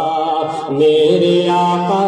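A man singing an Urdu naat (devotional poem) unaccompanied into a public-address microphone, drawing out long held notes that change pitch about halfway through.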